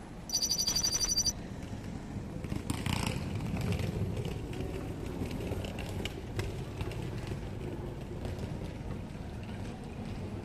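A bicycle bell rung rapidly for about a second near the start, a quick metallic trill. Then steady street background noise with scattered light clicks.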